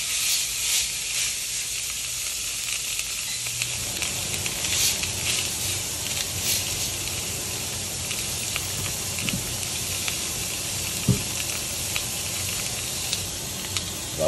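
Seasoned beef tenderloin searing on a hot cast-iron grill pan: a sizzle that starts suddenly as the meat goes down and runs on steadily, with scattered small pops and crackles.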